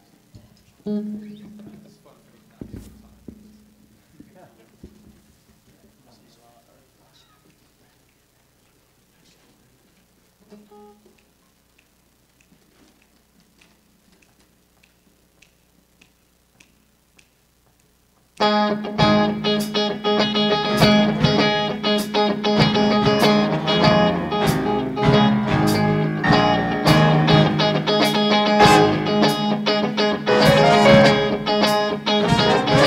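A few faint low notes and soft stage sounds, then about 18 seconds in a jazz big band comes in together and plays a tune loudly. The band has saxophones, trombones and trumpets, piano, bass and drum kit, with the drums striking regularly.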